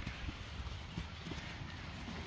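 Faint rustling and a few soft knocks as a hand reaches out and takes hold of a waxed oilskin raincoat.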